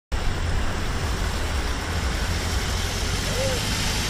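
Large cruiser motorcycle engine running at low revs, a steady deep rumble as the bike is ridden slowly up.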